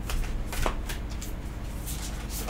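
A tarot deck being shuffled by hand: several short papery rustles of cards sliding against each other.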